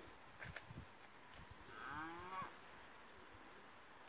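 A young cow gives one short, fairly faint moo about two seconds in, its pitch rising and then falling.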